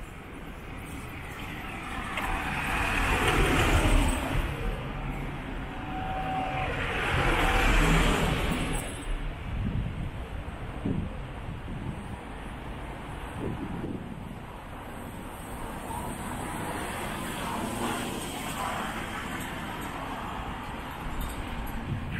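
Street traffic: two vehicles pass close by, the first swelling and fading about four seconds in and the second about eight seconds in, followed by a steady background of city traffic.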